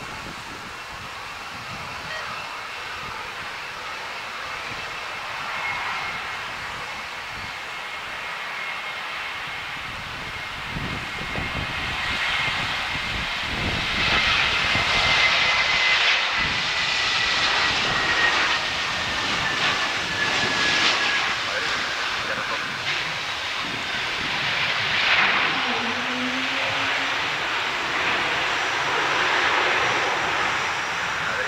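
Airbus A320neo's Pratt & Whitney PW1100G geared turbofans running at approach power as the airliner flies past low and close. A steady high whine slides slowly down in pitch over the engine noise, which grows louder about halfway through.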